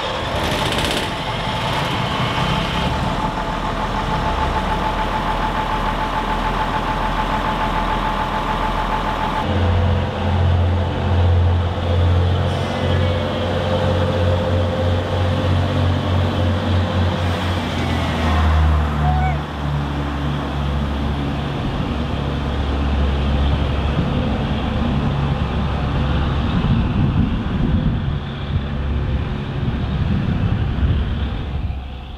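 Diesel engine of the NS 41 'Blauwe Engel', a vintage diesel-electric railcar, running as the train sets off. About ten seconds in, its low drone becomes much louder and pulses. It settles at a slightly lower pitch after the halfway point.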